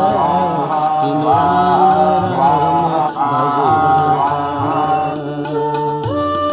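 Hindu devotional chanting: a voice intoning a mantra in repeated melodic phrases about a second long over a steady drone.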